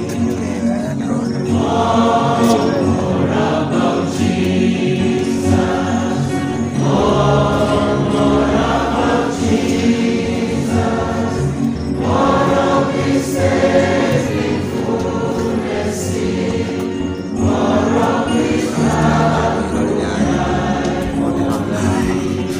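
Choir of gowned graduates singing a gospel song together, in louder phrases that come round about every five seconds over steady held lower notes.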